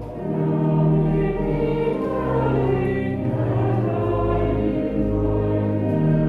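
A church congregation singing a hymn together, with sustained low accompanying notes that change every second or two.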